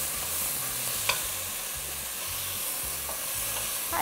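Sliced onion and red pepper sizzling in olive oil in a stainless pan on a powerful gas hob, stirred with a wooden spoon, with one light knock about a second in.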